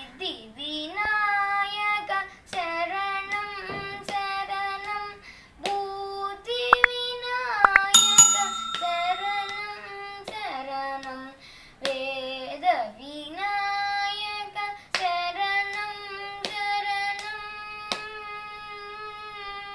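A boy singing a devotional Ganesha song without accompaniment, in long held and gliding notes. About eight seconds in, a short metallic ring sounds over the singing, just after a few sharp clicks.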